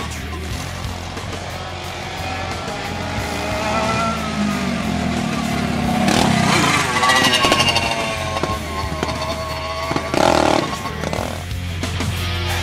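Small racing kart engines revving and rising in pitch as the karts drive past, mixed with a rock music soundtrack.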